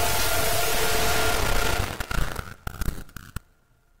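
Loud noisy hiss with a low rumble that breaks up about two seconds in into scattered sharp crackles and pops, which die away soon after.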